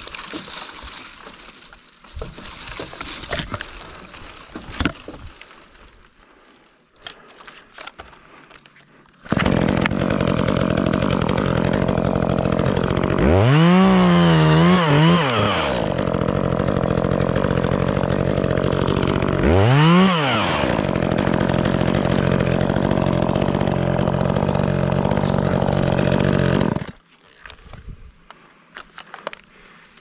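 Brush rustling and snapping as branches and vines are handled, then an Echo top-handle chainsaw comes on suddenly and runs steadily. It is revved up and back down twice, then shuts off abruptly near the end.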